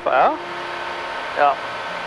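Steady engine and propeller drone of a Flight Design CT ultralight in cruise flight, under brief speech.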